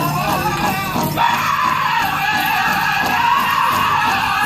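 Powwow drum group singing in high, loud voices over the drum. The singing shifts higher about a second in.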